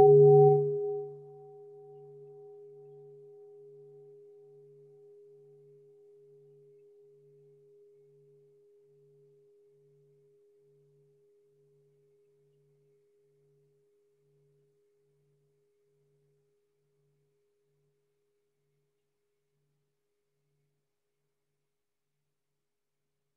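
A struck meditation bell ringing on and slowly fading away over about ten seconds, with a clear steady tone over a low hum that pulses about twice a second.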